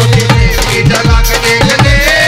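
Instrumental passage of live Indian devotional folk music: a dholak barrel drum played in a fast rhythm, its bass strokes bending in pitch, over a steady held note.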